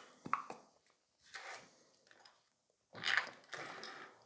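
Small objects being handled on a work table: a couple of light clicks, then two brief scraping rustles, the louder one near the end.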